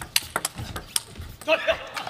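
A table tennis rally: a quick series of sharp clicks as the ball is hit back and forth off the rubber-faced bats and bounces on the table. A voice is heard briefly near the end.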